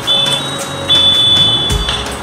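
Background music with a high, steady beep-like tone sounding twice: a short one, then one held for about a second.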